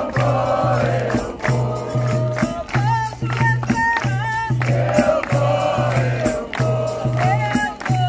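Capoeira roda music: a group singing a call-and-response chorus over atabaque drum, berimbaus and pandeiro, in a steady, even rhythm.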